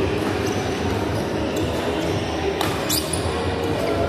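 Badminton rally: racket strikes on the shuttlecock and players' shoes on the court floor, with a couple of sharp hits close together near three seconds in, over steady noise from play on the neighbouring courts.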